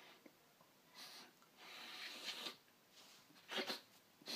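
A man snorting nasal snuff off his hand, hard sniffs through the nose. There is a short sniff about a second in, a longer sniff a little later, then two quick sniffs near the end.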